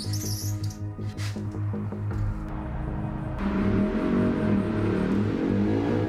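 Film soundtrack music: a steady pulsing low bass note, joined about halfway through by a swelling wash of noise and wavering tones.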